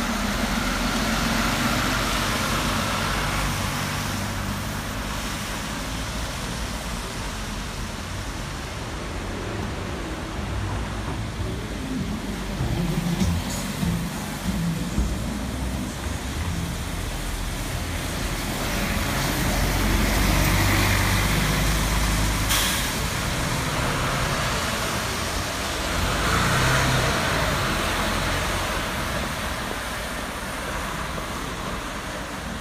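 Mercedes-Benz Citaro city buses passing on a wet street: engines running with tyres hissing on the wet road, growing louder as buses pull by about two-thirds of the way through and again near the end. A brief sharp noise stands out partway through.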